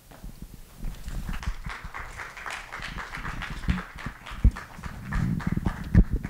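A small audience applauding, a dense patter of claps. Near the end come a couple of louder low knocks as a handheld microphone is handled.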